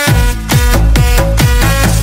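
Chinese electronic dance remix in a club style, with a heavy bass, a steady beat and a synth melody.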